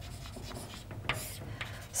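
Chalk writing on a blackboard: a few short, faint strokes, the longest about a second in.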